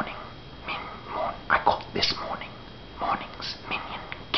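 A man whispering, reading poetry aloud in short breathy phrases.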